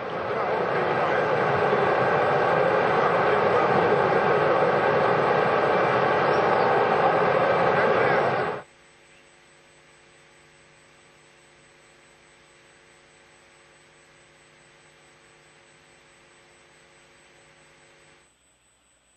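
Steady loud rushing noise from the launch pad around the Soyuz rocket, which cuts off abruptly about eight and a half seconds in. A faint steady hum follows.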